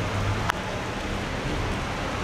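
Steady outdoor background hiss with a low rumble underneath, and a single sharp tap about half a second in.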